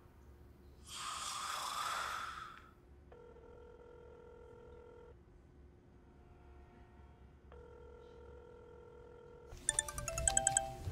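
Telephone ringback tone heard through the line: two steady rings of about two seconds each, separated by a short gap. Just before the end a louder, chiming phone ringtone starts; about a second in there is a short burst of noise.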